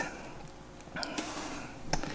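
Quiet steady background hiss and hum, with a faint click about a second in.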